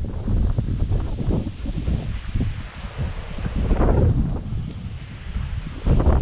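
Wind buffeting a GoPro action camera's microphone: a low rumble that rises and falls in gusts.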